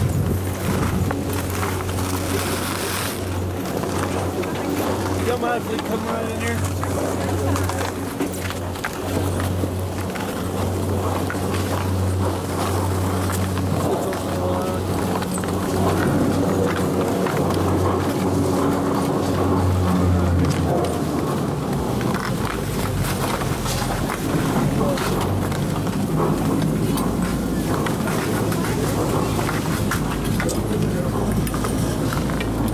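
Steady machine hum of a detachable high-speed quad chairlift's terminal at the loading station. About two-thirds of the way through, as the chair pulls out of the terminal, the hum gives way to a lower rumble.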